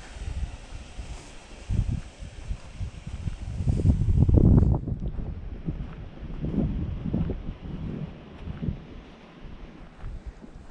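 Wind buffeting the microphone in uneven low gusts, loudest about four seconds in.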